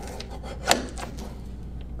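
Guillotine paper cutter's blade arm brought down, shearing through a sheet of black paper, with a few short scraping snips and one sharp crack a little under a second in.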